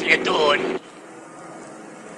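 Steady car engine hum from an animated soundtrack, with a brief voice exclamation over it. Both cut off abruptly under a second in, leaving only a faint low hum.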